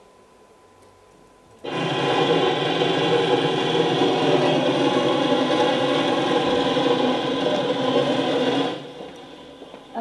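Drilling-rig machinery running steadily in a played video's soundtrack, heard through the hall's loudspeakers; it starts abruptly about a second and a half in and cuts off suddenly near the end.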